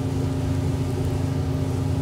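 A steady low hum made of a few fixed tones, like a motor or appliance running, holding an even level throughout.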